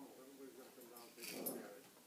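A puppy growling and whining in play while tugging at a plush toy, with wavering pitched growls and a louder, rougher snarl near the middle.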